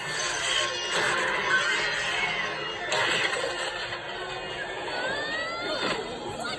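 Cartoon soundtrack played from a television: busy action music and sound effects mixed with character shouts, with a rising whistle-like sweep near the end.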